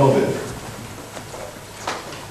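A man's voice trails off at the start, then a pause of quiet room sound broken by a single short click near the end.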